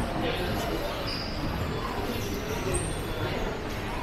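Shopping-mall ambience: indistinct voices of passers-by and footsteps in a large, echoing hall, steady throughout, with two brief high tones about a second in and near three seconds.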